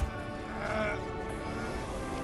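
Quiet film score music, with a brief groan from one of the exhausted climbers about half a second in.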